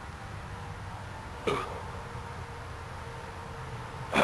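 A man's single short throat sound, like a hiccup, about a second and a half in, falling quickly in pitch, as he pauses from chugging a bottle of malt liquor. A steady low rumble runs underneath.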